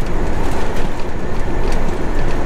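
Steady drone inside a semi-truck's cab at highway speed: the diesel engine running under the tyre and road noise.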